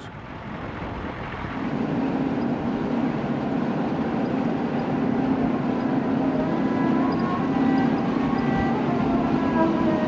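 Off-road vehicle driving across open desert. The engine and tyre noise builds over the first couple of seconds as it picks up speed, then holds a steady drone.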